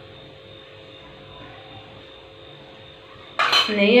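A faint steady hum for most of the time, then near the end a sudden loud clatter of a steel spoon against a metal kadai, with speech following right after.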